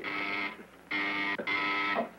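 Electric doorbell ringing three times in short, steady rings of about half a second each: someone arriving at the front door.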